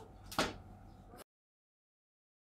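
A single short knock about half a second in, over faint background noise; a little after a second the sound cuts off to silence.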